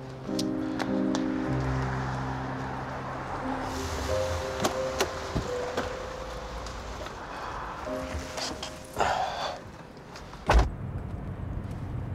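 Soft background music with held chords, then a car door shutting with a single heavy thump near the end.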